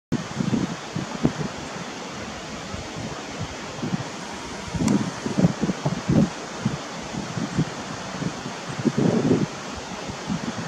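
Outdoor wind noise with the wind buffeting the microphone in irregular low gusts and rustles, stronger around the middle and again near the end.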